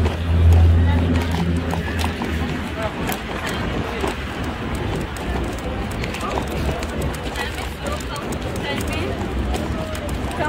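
Busy pedestrian street at night: passers-by talking among a general crowd murmur, with a loud low steady hum in the first two seconds.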